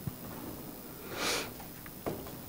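A woman standing close to a lectern microphone sniffs once, a little over a second in. A soft knock comes right at the start.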